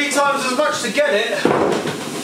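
A wooden organ bench set down on a hard floor, a short knock and scrape about one and a half seconds in, under a man's talking.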